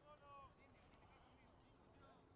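Near silence, with faint, distant voices calling out, one call in the first half-second, over a low background hiss.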